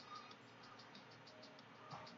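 Near silence, with faint background music whose high, even ticking beat runs at about six ticks a second.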